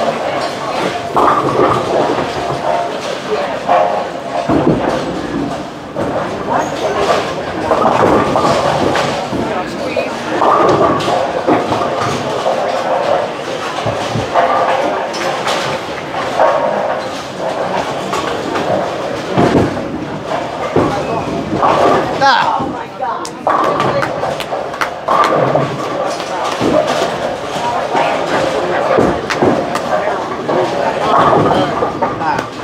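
Busy bowling alley din: indistinct chatter of many bowlers mixed with balls rolling and pins crashing on the lanes, with scattered thuds throughout.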